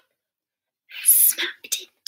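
Silence for about a second, then a woman whispering a short breathy phrase.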